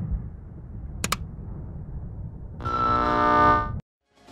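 A switch clicks on a field radio about a second in. About a second later a loud, buzzing, horn-like tone with many overtones sounds from the horn loudspeakers for about a second and cuts off abruptly. A low steady rumble runs underneath.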